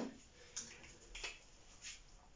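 A few faint, short clicks and scuffs, about three in two seconds, from a person stepping up to a whiteboard and raising a marker.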